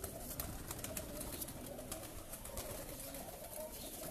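Domestic pigeons cooing faintly, a low wavering murmur, with scattered small clicks.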